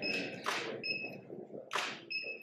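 Press cameras clicking in short bursts at a photo call, three bursts in all, with a faint short high beep recurring between them.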